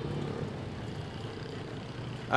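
Steady outdoor background noise with a low hum, the ambience under a pause in the dialogue, with no clear single event.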